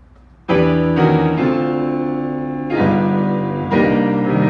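Viscount Concerto 5000 digital grand piano sounding sustained piano chords: the first is struck about half a second in, and new chords follow near three seconds and just before the end.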